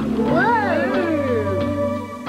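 Scene-ending music from a TV soap opera holding a sustained chord. Over it, one pitched sound rises and then slides back down over about a second, starting about half a second in.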